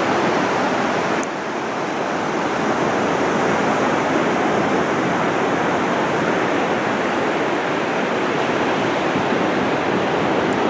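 Steady rush of ocean surf breaking and washing up a sandy beach, dipping slightly about a second in.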